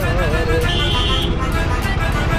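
A man singing a held, wavering note while riding a motorcycle, breaking off about half a second in, over steady engine and wind rumble. A brief high tone sounds about a second in.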